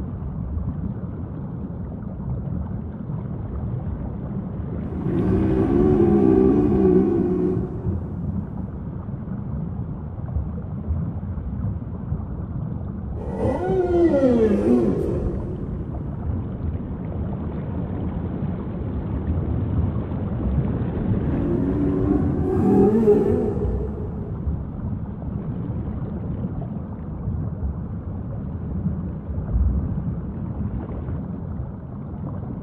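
Humpback whale song: three long pitched calls spaced about eight seconds apart, the middle one sliding down in pitch, over a steady low background noise.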